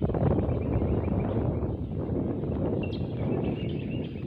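Wind buffeting the microphone: a loud, dense, fluttering rumble. A faint high chirp comes about three seconds in.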